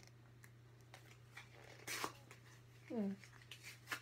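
A quiet room with a steady low hum and a few faint crinkles and clicks as a small candy wrapper is handled. A brief vocal sound comes about three seconds in.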